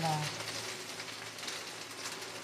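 Tilapia pieces sautéing in hot oil in an aluminium pot: a steady, crackling sizzle.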